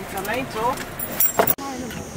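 Voices talking inside a car cabin, with a few sharp clicks about a second and a half in. The sound then cuts abruptly to open outdoor air.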